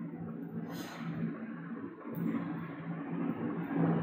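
A faint steady low hum over light background noise, with no distinct events.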